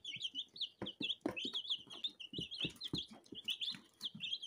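A box full of young chicks peeping: many short, high, falling cheeps overlapping without a break. A few soft knocks sound among them.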